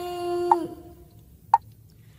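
The last note of a sung chant line, held steady and fading out within the first second, over short knocks that keep the beat about once a second. After the voice stops, a single knock sounds over faint accompaniment.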